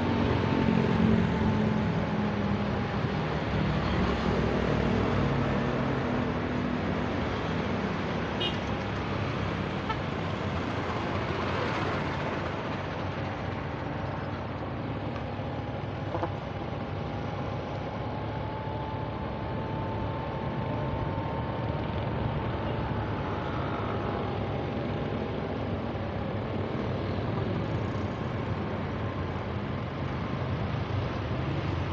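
Road traffic: motor vehicles running along the road, a steady traffic noise that is loudest in the first few seconds, with a faint wavering engine tone through it.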